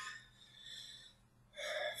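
Quiet breathing from a man in a pause between sentences: a faint breath in, with a soft hiss, about halfway through, then his voice starting up again near the end.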